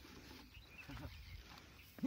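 Near silence: faint outdoor background with one brief, faint sound about a second in.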